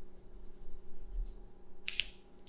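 Pencil scratching faintly on paper in short strokes, with a brief sharper stroke near the end.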